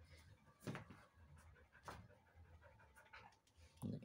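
Faint, short puffs of breath from an agitated water buffalo, about three, roughly a second apart.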